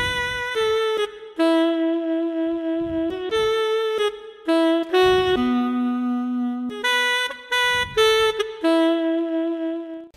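Yamaha PSR-SX900 arranger keyboard's saxophone voice playing a slow melody of held notes, in short phrases with brief gaps between them.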